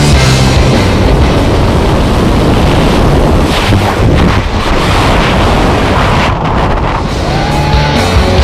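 Dubbed rock music mixed with a loud, steady rush of wind noise from the freefall airstream blasting across the camera microphone.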